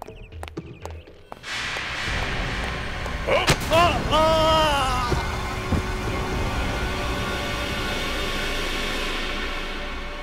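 A sudden loud dramatic sound-effect boom about a second and a half in, running on as a long noisy rush. A man's falling cry comes about two seconds after it.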